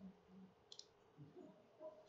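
A few faint computer mouse clicks, one about three-quarters of a second in and another near the end, over near-silent room tone.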